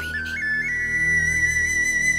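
Dramatic background music: a high flute melody steps up in pitch twice in the first second, then holds one long note over a low, steady drone.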